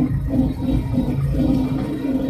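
YuMZ tractor's diesel engine running steadily while the tractor drives slowly along a snowy track, heard loud from inside the cab as a low drone with a regular pulse.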